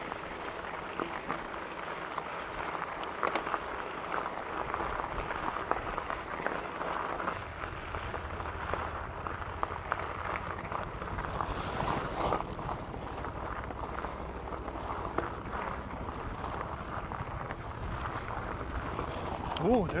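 A plus-size mountain bike (Trek Fuel EX 9.8 27.5 Plus) rolling over a gravel fire road. Its fat tyres crunch steadily over the stones and the bike rattles with many small clicks. A deeper rumble joins about a third of the way in, and a brief hiss comes near the middle.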